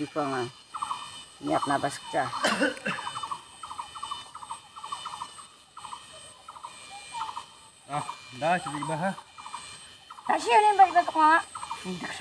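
Insects chirping in a string of short, evenly repeated pulses, broken by three short bursts of talking.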